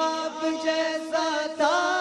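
Male voices reciting a naat, an Urdu devotional chant, holding long drawn-out notes that bend in pitch about a second in and again near the end.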